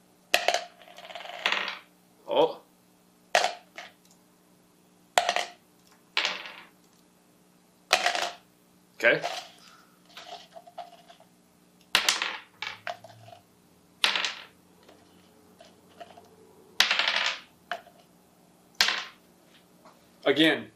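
Small dice dropped one at a time with chopsticks into a plastic cup and back out onto a wooden table: about a dozen sharp clacks, one every second or two, some followed by a short rattle.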